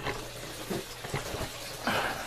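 A steady hiss of running water from the aquaponics tank system, with a few faint clicks.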